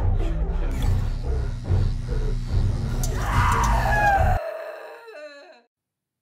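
Horror-themed intro music with a heavy bass beat. About three seconds in, a drawn-out falling cry rises over it; the music cuts off abruptly a second later and the cry trails off on its own.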